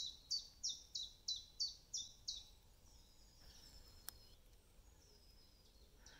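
A songbird singing a quick run of short, high, downward-sliding notes, about three a second, which stops about two and a half seconds in; a faint click about four seconds in.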